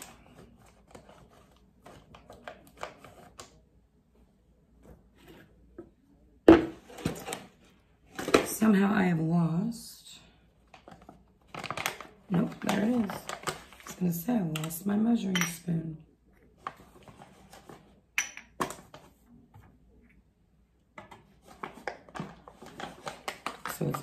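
A woman's low, half-spoken voice in short stretches, with small knocks and clinks of containers and a spoon being handled while pickling lime is measured out. One sharp knock about six and a half seconds in is the loudest sound, and a couple of smaller clicks come later.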